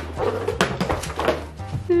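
Background music under a woman's wordless, pained vocal sounds of frustration, with a few brief knocks from a book being handled.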